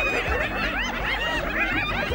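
A group of spotted hyenas giggling: many rapid, high-pitched rising-and-falling cries overlapping one another. It is the nervous giggle hyenas give when threatened, here with lions among them.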